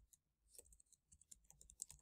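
Faint typing on a computer keyboard: a scatter of soft key clicks, starting about half a second in.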